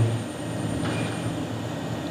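A steady low background hum, like room or machine noise such as a fan, with no other clear event.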